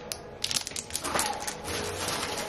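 Clear plastic packaging crinkling as it is handled around a nail buffer: a run of quick, sharp crackles, thickest in the first second.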